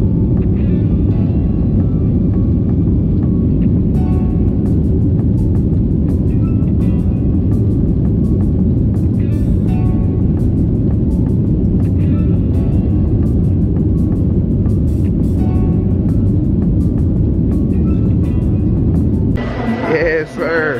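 Steady low roar of an airliner cabin in flight, with music playing over it.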